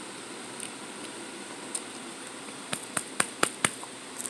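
Mouth sounds of chewing a snack close to the microphone: a quick run of five or six sharp wet clicks about three seconds in, over a steady background hiss.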